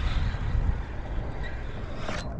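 Wind buffeting the microphone: a steady, fluttering low rumble with a faint haze of air and water noise above it.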